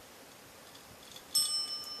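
Chrome desk service bell struck once by a cat's paw on its top about one and a half seconds in, giving a clear ring that carries on.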